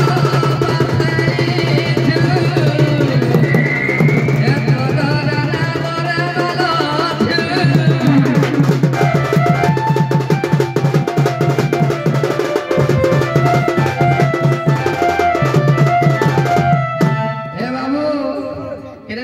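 Odia folk dance music: fast hand-drumming on a barrel drum (dhol) under a steady low drone and a melody line that moves in short steps. The music breaks off near the end.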